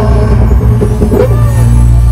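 Live Sambalpuri stage-band music played loud through a PA system, mostly a deep, steady bass with little above it, between sung lines.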